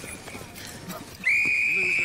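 Whistle blown in one long, steady blast, starting just over a second in.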